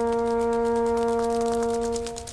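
Soundtrack music: a brass instrument holding one long, steady note that tapers off at the end.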